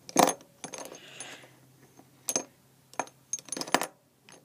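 Small hard makeup items clicking and clinking together as they are rummaged through in search of an eyeliner: a loud click at the start, scattered clicks after it, and several in quick succession near the end.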